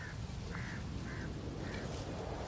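A bird giving short, repeated calls, about two a second, over a steady low rumble.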